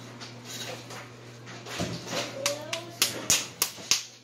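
Raw ground meat patted between the palms while a burger patty is shaped: four quick slaps, about three a second, near the end.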